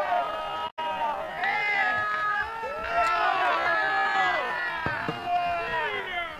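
Several voices of players and spectators shouting over one another during a goalmouth scramble in a football match, with long drawn-out calls; the sound cuts out completely for a moment about a second in.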